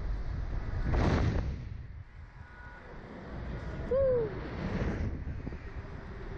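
Wind rushing over the microphone of the camera riding on a swinging Slingshot ride capsule, surging about a second in and again near five seconds. About four seconds in, a rider lets out a short cry that rises and falls in pitch.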